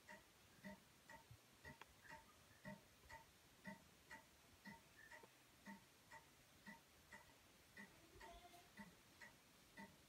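Faint clock ticking steadily, about two ticks a second.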